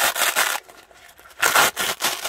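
Nylon fanny pack being handled and pulled open: a burst of fabric rasping and rustling, then a second burst about a second and a half in.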